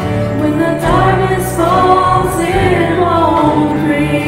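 Church worship team of men and women singing a gospel song together with band accompaniment. Long held, gliding vocal lines sit over steady low bass notes that change every second or so.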